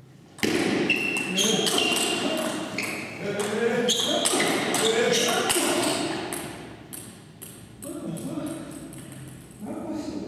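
Table tennis rally in a large hall: a fast run of sharp ball clicks off bats and table, with a voice among them. The clicks thin out after about six seconds as the rally ends.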